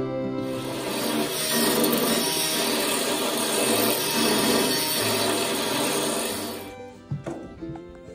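A loud, steady, harsh rasping noise of tool work over background music. It starts about half a second in and cuts off just before seven seconds, followed by a few sharp knocks.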